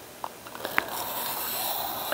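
A few light clicks as a steel ruler and rotary cutter are set on book paper, then from under a second in the rotary cutter's blade rolls along the ruler's edge, slicing through the paper with a steady hiss.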